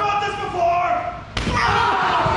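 Raised voices, with a sharp slam about one and a half seconds in: a body crashing onto a wrestling ring.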